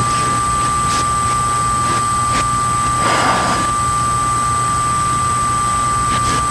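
Steady hiss of a noisy broadcast line with a constant high whine and a low hum under it, heard in a pause between words. There is a brief swell of noise about three seconds in.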